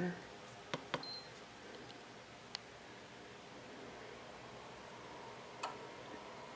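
Push button of a Go Power remote on/off switch pressed to turn on an inverter: two soft clicks a little under a second in, followed at once by a short, faint high beep. Two more isolated faint clicks come later, over low room hiss.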